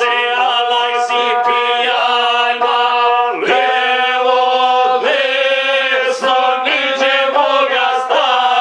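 Men singing a Serbian folk song together, accompanied by a gusle, the single-string bowed fiddle, over long held notes.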